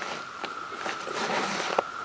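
Clothing rustling and boots shifting on a saddle-hunting tree platform as a man turns around the trunk, with a couple of light clicks; a steady high tone runs underneath.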